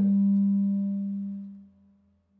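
A single sustained low musical tone with faint overtones, holding steady and then fading out about a second and a half in.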